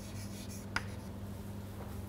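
Chalk on a blackboard: faint scratching as a word is finished, then a single sharp tap about three-quarters of a second in, over a steady low electrical hum.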